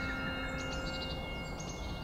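Outdoor ambience: birds chirping in short clusters of high notes over a steady low rumble, with a few long held tones underneath.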